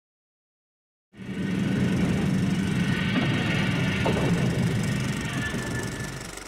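A train running on rails: a loud, steady rumble that starts suddenly about a second in, with a brief squeal of wheels or metal about three to four seconds in.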